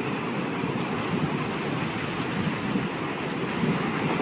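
Steady wind-like rushing sound effect under an animated closing title sequence, starting abruptly and holding at an even level.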